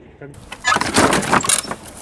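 Rattling and scraping of a fastening on a weathered wooden plank gate, worked by hand, loudest from about half a second in until near the end.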